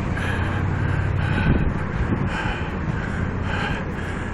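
City street traffic: a steady low rumble of engines and passing vehicles, with a fainter higher sound recurring about once a second.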